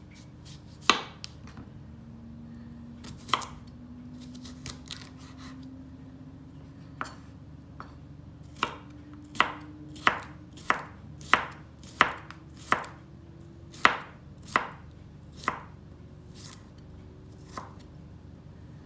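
Chef's knife cutting a cucumber on a wooden cutting board: a few separate strikes in the first half, then a run of about ten chops a little under a second apart as the cucumber is diced.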